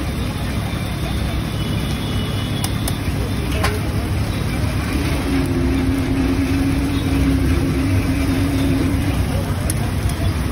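Steady low rumble of road traffic, with a low steady drone from about five to nine seconds in and a single sharp click near four seconds in.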